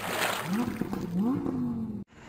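Tail of a produced channel intro: a noisy wash with a voice-like tone that slides up and down, following a loud hit, then cut off suddenly at the end.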